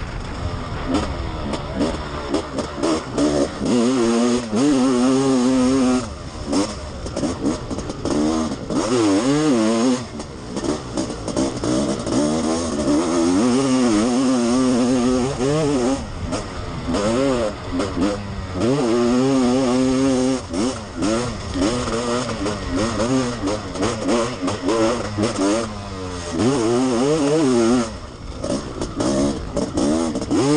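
Honda CR500 single-cylinder two-stroke motocross engine raced hard, heard close up from an onboard camera. The revs climb and fall again and again as the throttle is opened and shut, every few seconds.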